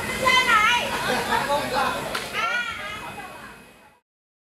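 A group of people's voices talking and calling out over one another, fading out toward the end.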